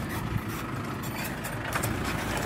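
Tractor engine running steadily under load as it pulls a three-disc plough through the soil, with scattered short clicks and crackles over the engine sound.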